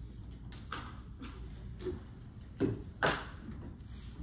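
About five scattered knocks and thumps of objects being handled, the two loudest about two and a half and three seconds in.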